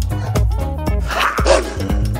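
Background music with a steady beat, and a dog-bark sound effect about a second in, given to a toy dog figure.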